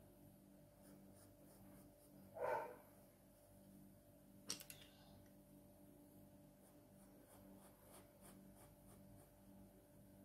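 Faint, light strokes of a 2H graphite pencil shading on drawing paper. A brief, louder muffled sound comes about two and a half seconds in, and a sharp click about two seconds after that.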